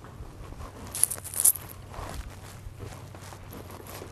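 Footsteps and light rustling in a quiet church over a steady low hum, with two short, sharp, hissy sounds about a second in.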